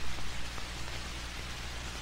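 Steady hiss and a low mains-like hum from an old film's soundtrack, with no clear machine sound.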